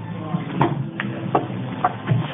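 Background pub chatter: indistinct voices of several people, with a few short sharp knocks.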